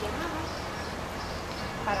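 Steady outdoor background noise with faint, distant voices of people talking. A voice begins speaking in Spanish near the end.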